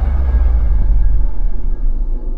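Deep, low rumble of a cinematic logo-intro sound effect: the tail of a boom, slowly dying away with some dark, music-like ambience.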